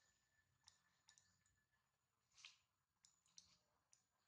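Near silence, broken by a few faint, scattered clicks and ticks, the loudest about two and a half seconds in.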